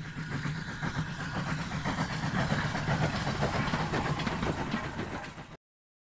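Steam train running, a steady low note under a rapid clatter, cutting off abruptly about five and a half seconds in.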